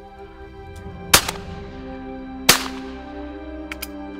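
Two shotgun shots just over a second apart, each with a trailing echo, then two faint sharp cracks near the end, over background music.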